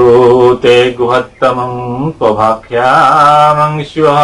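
A man chanting a Sanskrit mantra solo, intoned on a near-steady pitch in short phrases with brief breaks, and one long held note about three seconds in.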